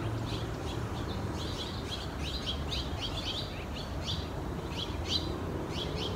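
Small songbirds chirping: a quick, continuous run of short high chirps, several a second, over a low steady background rumble.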